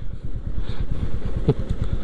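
Royal Enfield motorcycle engine running steadily as the bike is ridden slowly, a quick even beat of low exhaust pulses.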